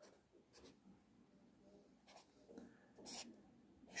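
Felt-tip pen drawing lines on paper: a few faint, short strokes, the loudest a little after three seconds in.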